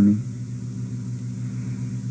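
A steady low hum of several held pitches, the background noise of an old audio-tape recording, with a man's voice finishing a word at the very start.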